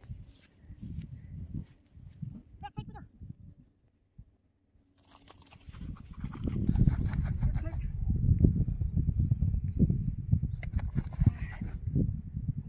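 Low rumbling wind and handling noise on a hand-held microphone, with footsteps through grass, loud from about five seconds in as the camera is carried along. A brief voice is heard about three seconds in.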